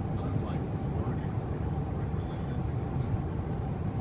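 Steady road and engine rumble heard inside the cabin of a car driving along.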